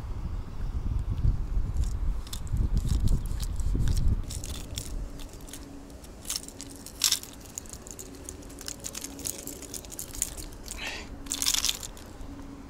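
Sharp clicks and crunchy rustling of gloved hands working a large hard-plastic wobbler's treble hooks free from a small pike's mouth. A low rumble fills the first four seconds, and a short rustling burst comes near the end.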